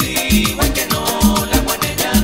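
Live salsa band playing dance music: a fast, steady percussion beat over bass and sustained instrumental tones.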